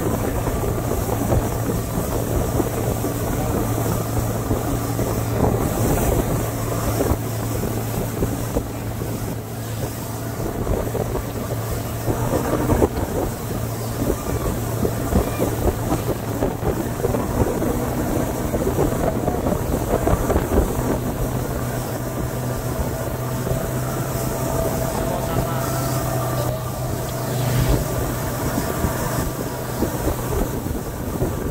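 Outboard motor running steadily at speed, with wind buffeting the microphone and the rush of the boat's wake.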